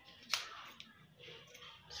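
Fabric scissors snipping a notch into the cut edge of the fabric: one sharp snip about a third of a second in, followed by a couple of fainter snips.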